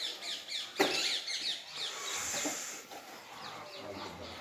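A small bird calling over and over in quick, high, down-slurred chirps, about three to four a second, with a single sharp knock a little under a second in.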